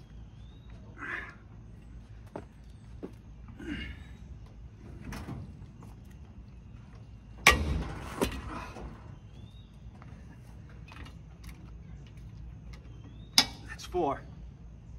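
Heavy exhales while straining on a socket wrench against a seized lug nut. A sharp metallic clank rings out about halfway through, followed by a smaller knock, and there is another sharp click near the end. Faint bird chirps come and go in the background.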